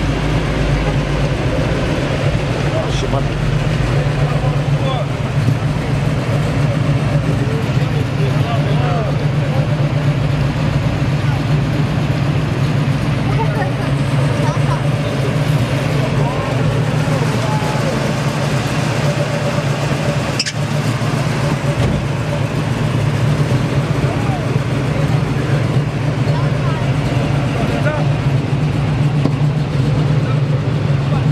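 A car engine idling steadily, a constant low hum throughout, with indistinct chatter from people around it.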